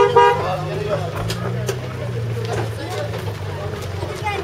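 The reedy folk music breaks off about a quarter second in, leaving a steady low drone from a vehicle for about three seconds, with voices around it.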